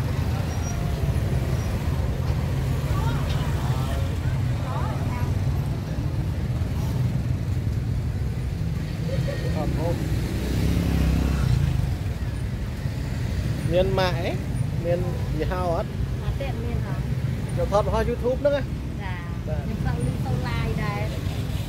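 Busy street-market ambience: scattered voices of people talking nearby over a steady low rumble of road traffic. The voices come and go, thickening in the last few seconds.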